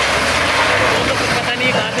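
Diesel engine of a SEM wheel loader running loudly as it works a demolition site, its bucket pushing into building rubble, with voices behind it.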